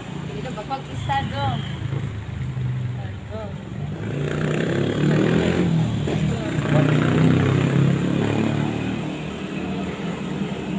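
A vehicle engine's low rumble that swells from about four seconds in, peaks around seven seconds and eases off near the end, with a few brief bits of speech about a second in.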